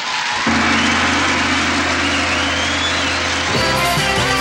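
TV variety-show closing theme music: a sustained chord starts about half a second in, and a rhythmic band part with bass notes comes in near the end.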